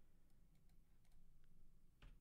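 Near silence: room tone with a few faint, scattered computer-mouse clicks.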